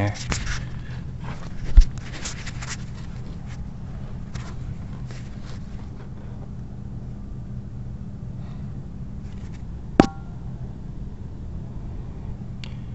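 Steady low hum, with a dull bump about two seconds in and a sharp metallic clink with a brief ring near the end.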